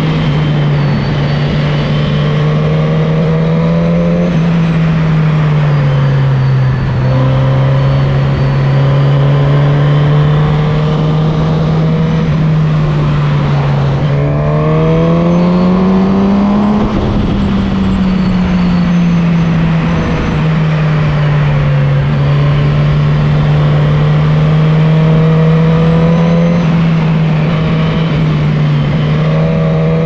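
Suzuki GSX-S1000's inline-four engine heard onboard while riding at steady road speed, over wind noise. The engine note dips twice in the first half as the throttle eases, climbs to its highest about halfway through under acceleration, then settles back to a steady cruise.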